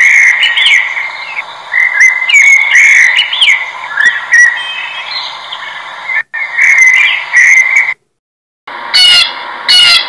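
Blackbird singing: a run of whistled phrases that rise and fall in pitch, with short high squeaky notes between them, stopping about eight seconds in. After a brief silence a blue jay gives two harsh, repeated calls near the end.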